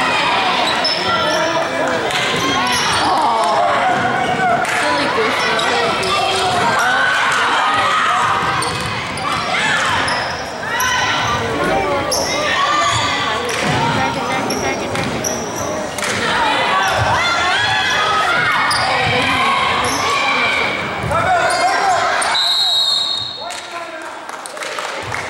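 Sounds of a girls' basketball game in a school gym: a ball bouncing on the hardwood and voices of players, coaches and spectators shouting and talking throughout, with one long high referee's whistle near the end.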